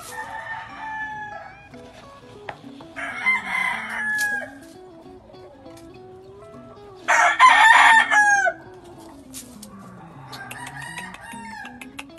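Roosters crowing four times. The crow about seven seconds in is the loudest, the one about three seconds in is a little softer, and the first and last are fainter.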